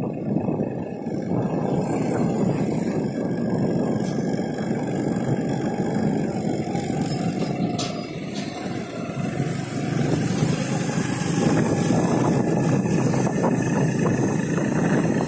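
Motorcycle running at a steady road speed while being ridden, its engine sound mixed into an even rush of wind and road noise.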